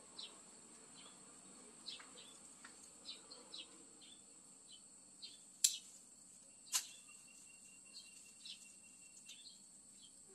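Pruning shears snipping branches on a large bonsai tree, two sharp snips about a second apart just past the middle. A faint, steady high insect hum with scattered short chirps runs underneath.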